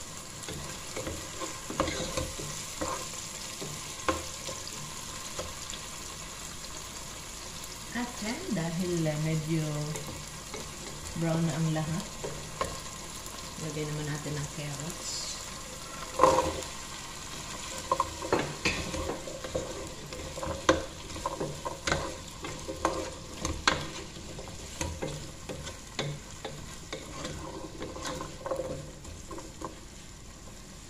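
Meat and onions sizzling in a pot while a wooden spoon stirs and knocks against the pot. About sixteen seconds in, diced carrots tip into the pot with a clatter, followed by repeated knocks and scrapes of the spoon as they are stirred in.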